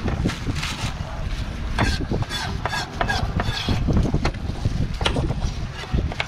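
Wind rumbling on the microphone, with scattered knocks of a knife and pineapple against a plastic cutting board.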